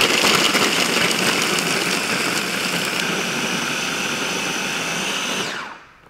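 KitchenAid mini food chopper running at speed, its blades grinding queso fresco fine. The motor starts suddenly, runs steadily for about five and a half seconds, then winds down near the end.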